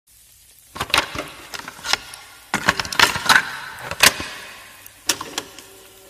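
Handling noise: sharp rustles and clicks in four or five quick clusters, like long hair and jewellery being handled close to the microphone. A steady held tone comes in near the end.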